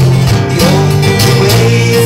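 Two acoustic guitars playing a folk song live, loud and continuous.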